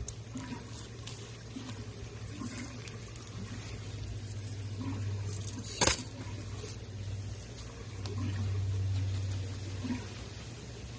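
Coarse granular bonsai soil trickling from a soil scoop into a plastic pot, then rustling and crunching as fingers press it in around the roots. One sharp tap about six seconds in, over a steady low hum.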